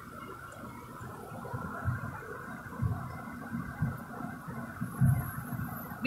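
Inside a car cabin while driving: a steady low rumble of road and engine noise with a constant hum, broken by irregular low thumps every second or so.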